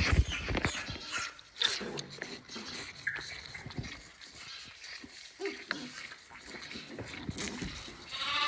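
Calves sucking milk from a teat feeder: irregular sucking and slurping noises with small knocks against the feeder.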